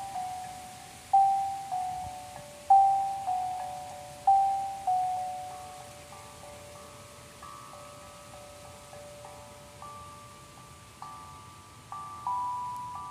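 Sound bowls struck one after another with a mallet, each note ringing out and fading. In the first five seconds the strikes are loud, about every second and a half, alternating between a few pitches; after that they turn softer and quicker, overlapping into a gentle ringing chord.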